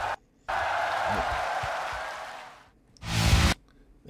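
Concert crowd cheering and applauding after the song ends, fading out over about two seconds. It is followed about three seconds in by a short, loud rush of noise.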